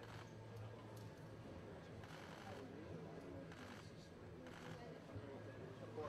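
Low room ambience from people going through a food serving line: faint indistinct voices and a few brief rustles and clatters over a steady low hum.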